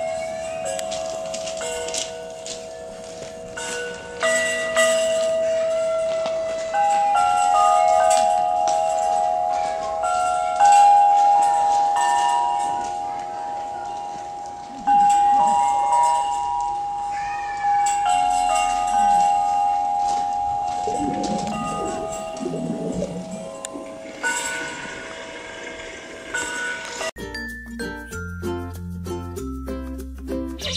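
Hanging metal chime bars struck one after another with a wooden mallet, each note ringing on with a long sustain so the tones overlap. Brief voices come in about two-thirds through, and near the end the chimes give way to plucked-string music.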